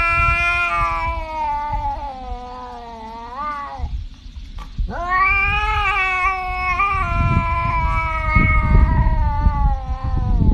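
Tabby house cat yowling in two long, drawn-out calls. The first ends with an upward bend about three and a half seconds in; the second starts about five seconds in and carries on past the end. A low rumbling noise sits underneath, strongest near the end.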